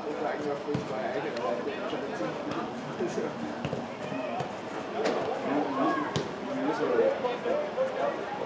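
Several people talking over one another, with a few sharp ball-hit smacks; the loudest comes about five seconds in.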